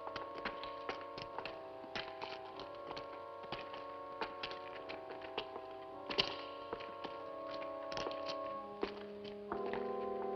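Sustained, slowly shifting film-score chords, a low note joining near the end, over a scatter of irregular sharp taps and clicks, the loudest about six seconds in.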